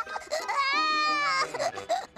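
Cartoon baby crying: a long wail that falls in pitch about half a second in, followed by short sobbing cries near the end.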